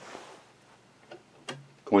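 Two small metallic clicks, the second sharper, as the steel hook-drive linkage of a Singer 66 sewing machine is handled onto its pivot stud; a voice starts near the end.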